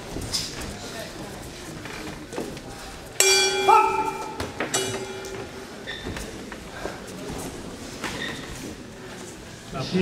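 Boxing ring bell rung twice, about a second and a half apart, each a sudden loud ring that dies away, over the voices in the hall.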